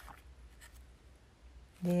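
Faint light rustling and a few soft brushes of small kraft-paper sample sachets and a paper card being handled. A woman's voice starts near the end.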